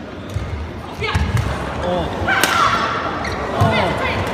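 Badminton rally: several sharp smacks of rackets striking the shuttlecock, mixed with short squeaks of players' shoes on the court mat.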